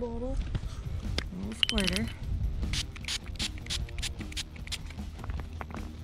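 Small pump spray bottle squirted in a quick run of sprays, about four or five a second, onto a broken thunderegg to wet it.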